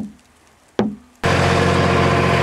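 Two brief knocks, then a farm tractor's engine fitted with a snowplough blade starts being heard suddenly and runs steadily with a low hum.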